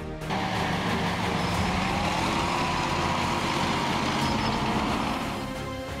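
A heavy vehicle engine running steadily, fading in just after the start and out near the end, over background music.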